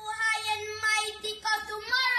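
A high voice singing a pop song over backing music.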